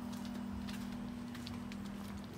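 A steady low hum made of two close tones, with faint scattered ticks and clicks over it.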